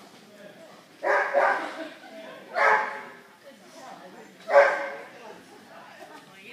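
A dog barking: a quick pair of barks about a second in, then single barks at about two and a half and four and a half seconds.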